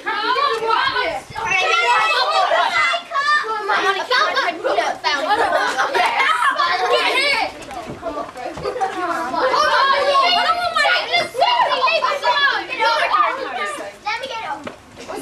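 Many children's voices chattering over one another, a continuous overlapping babble of kids talking and calling out with no single clear speaker.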